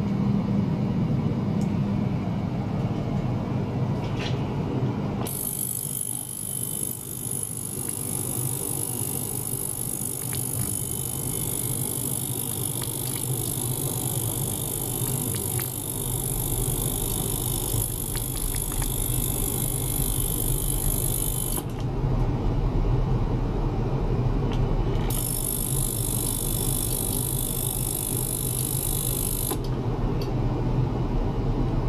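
Small tabletop ultrasonic cleaner running, a steady low hum under a high hiss. The hiss cuts in about five seconds in, drops out for a few seconds past the twenty-second mark, then returns and stops again just before the end.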